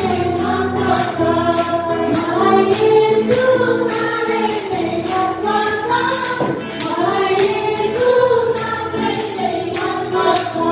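Several women singing a Nepali Christian hymn together into microphones, amplified through a PA, over a hand drum keeping a steady beat.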